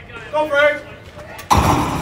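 A single loud, sharp smack about one and a half seconds in, ringing briefly, after a short shout from the crowd.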